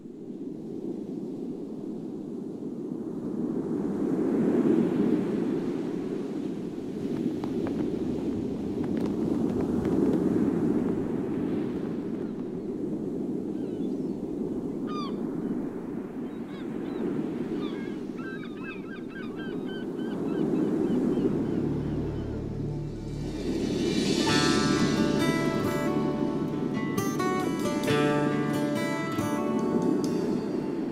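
A rushing wash like ocean surf, swelling and ebbing every five or six seconds, with a few short bird calls around the middle. About two-thirds of the way in a low bass note enters, followed by the song's instrumental intro.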